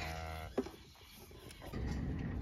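A cow gives a short, low moo that holds steady in pitch for about half a second. A single click follows, then a quiet stretch, and a steady rushing noise comes in near the end.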